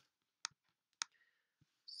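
Two sharp clicks from a computer mouse, about half a second apart.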